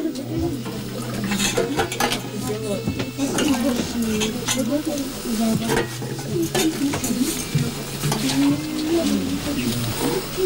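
Metal pot and enamel mugs being handled: repeated sharp clinks and scrapes of metal on metal and enamel, coming irregularly about every second.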